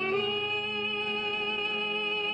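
Orchestral opera music: one long note held at a steady pitch over sustained chords.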